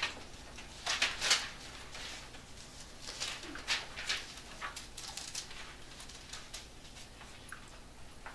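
Thin Bible pages being turned and rustled in a series of short, crisp bursts while the passage is looked up.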